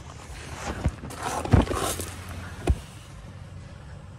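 Faint steady hum of the Chevrolet Cruze's Ecotec engine idling, heard inside the cabin, with rustling and three dull knocks from handling in the car, the loudest about a second and a half in and near three seconds.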